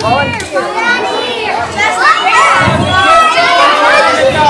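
An audience of children calling out all at once, many high voices overlapping, growing louder about two seconds in.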